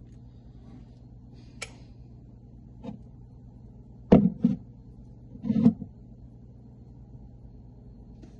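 A few knocks of a mug and glass being moved about on a tabletop: a light click early, then two louder knocks about four seconds in and another double knock a second later. A steady low hum runs underneath.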